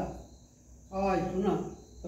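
A man's voice speaking one short phrase about a second in, between pauses, with crickets chirping steadily in the background.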